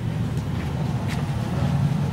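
Steady low background rumble, with a faint click about a second in.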